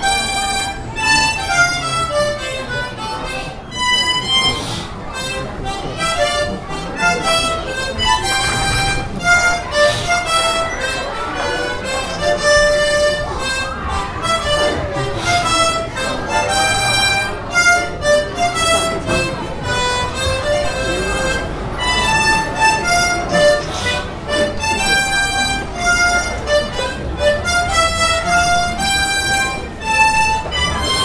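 A trio of harmonicas playing a march together: a lively run of short notes and chords that goes on without a break.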